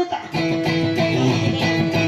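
Electric guitar played live, plucked notes ringing on over a sustained chord, with a brief break just after the start.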